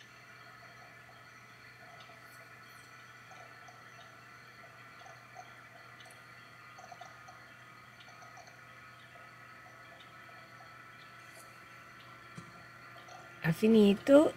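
Silhouette Cameo cutting plotter cutting a rhinestone template, its motors giving a faint steady whine with a few light ticks as the blade carriage and roller move.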